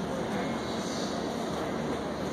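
Steady background din of a large hall: an even rumble with no distinct events.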